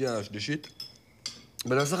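Forks and cutlery clinking against plates and dishes at a meal, a few light clicks between bursts of talk.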